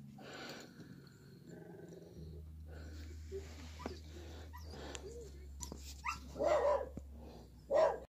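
A dog barking, loudest twice near the end.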